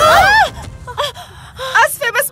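Several women crying out together as they tumble to the floor. A loud, overlapping cry fills the first half second, and a few shorter, quieter vocal sounds follow.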